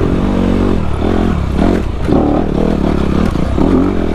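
Dirt bike engine revving up and dropping off repeatedly as the bike is ridden hard over a rocky trail, with clatter and knocks from the wheels and chassis hitting rocks.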